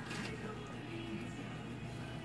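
Television playing faintly in the background, its sound mostly music.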